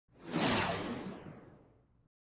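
A whoosh sound effect for a logo intro. It swells in quickly, then fades out over about a second and a half, its high end dying away first.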